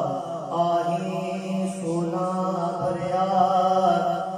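A solo man's voice singing a naat (a salam) unaccompanied, in long held notes that bend slowly up and down.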